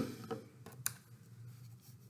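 Small handling noises of construction paper being worked by hand: one sharp click at the start, then a few faint ticks and light rustles.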